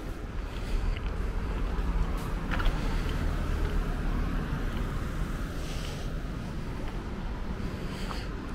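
Street traffic heard from the sidewalk: cars driving by over a steady low rumble, with a car passing close by partway through.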